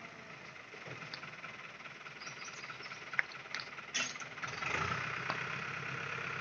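Farm tractor's diesel engine running as the tractor crawls over loose rockfall debris, getting louder and heavier about four and a half seconds in as it climbs onto the rubble. A few sharp knocks come a little before that.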